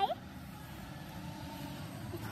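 A voice breaks off at the very start, then a steady low outdoor rumble with no distinct events.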